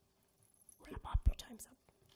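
A man breathing out heavily and breathily close to a podium microphone, with a few low breath pops about a second in.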